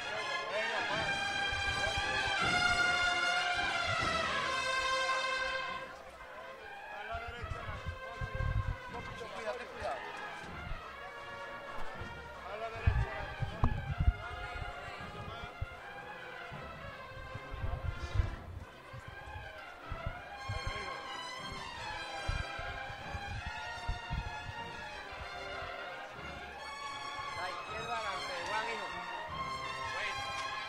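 Cornet and drum band playing a processional march, the cornetas carrying the melody over the drums. The band is loud for the first few seconds, softer through the middle with heavy drum strokes, and the cornets swell again in the last third.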